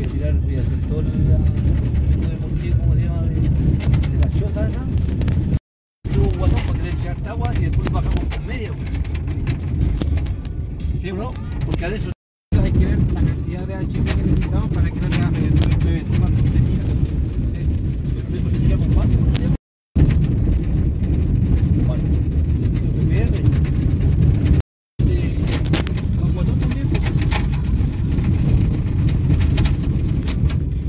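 Steady low rumble of a car driving on a dirt road, heard from inside the vehicle, with faint voices over it. The sound cuts out completely for a moment four times.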